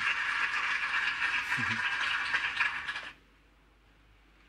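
A steady hissing, rattle-like noise that cuts off suddenly about three seconds in, leaving near silence.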